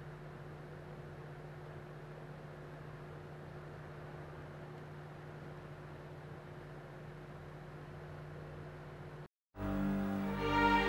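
Steady low hum with a soft hiss, the room tone of the recording, which cuts off about nine seconds in. After a brief silence, music with strings starts just before the end.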